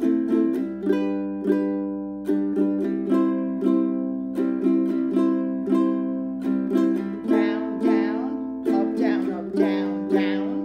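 Ukulele strummed in a steady repeating down, down, up, down, up pattern (the modified island strum), each stroke ringing on into the next. Near the end, a woman's voice calls the down and up strokes over the strumming.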